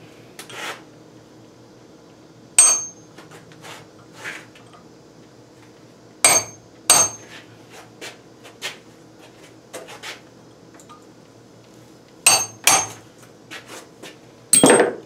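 Hammer striking a cold chisel against a steel Mopar E-body front brake spindle, punching small dimples to make up a thousandth or two so the spindle sleeve holds tight. A handful of sharp metallic pings with a short ring, two pairs about half a second apart, and softer taps between them.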